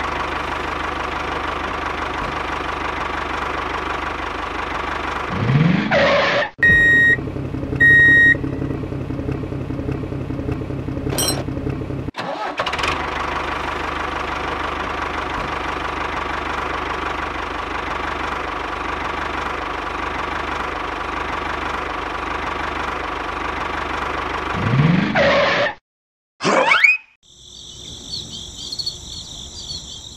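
Steady engine running sound for a toy tractor, with two short beeps about seven and eight seconds in and a brief rise in pitch twice. Near the end it gives way to a quieter, higher sound.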